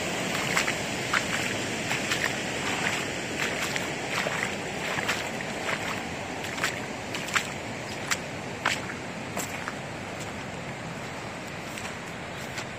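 Steady rush of the Russian River running high, with sharp crunching steps on a wet gravel path every half second to a second that stop near the end.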